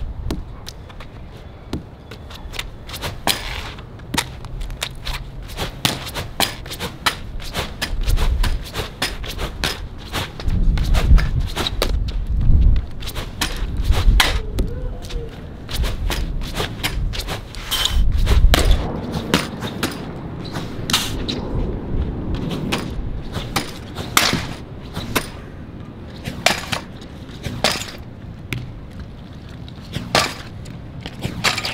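A lacrosse ball cracking against a concrete wall and smacking into and out of a lacrosse stick's pocket, many sharp hits in quick succession, sometimes several a second. Bursts of low rumble come and go, loudest around the middle.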